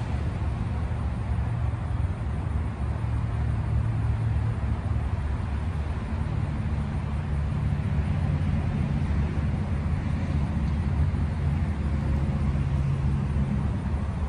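Steady low rumble of nearby highway traffic, with a low engine hum that shifts slightly in pitch about six seconds in.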